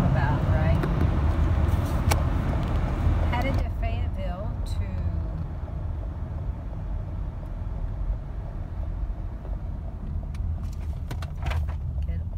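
Steady low road rumble inside a moving car's cabin. Brighter tyre and wind hiss fills the first few seconds, then falls away about three and a half seconds in, leaving mostly the low drone. A few faint clicks come near the end.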